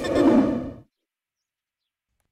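Film soundtrack at a scene change: a short hiss of noise fades and cuts off under a second in, then dead silence.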